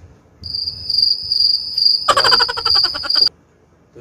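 Cricket chirping: a steady high trill that starts about half a second in, joined past the halfway mark by a louder, rapidly pulsing call, both cutting off suddenly near the end.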